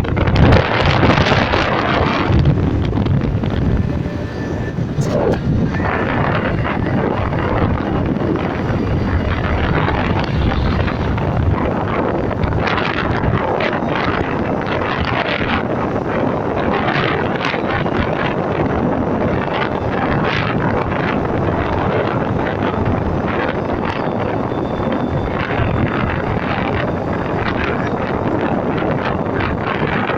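Wind rushing over the microphone of a camera held out by a rider on a moving motorbike, with vehicle noise underneath; loudest in the first two seconds, then steady.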